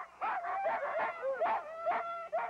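A team of Alaskan huskies yelping and howling over one another, many short high calls rising and falling in pitch: the excited clamour of sled dogs being harnessed and eager to run.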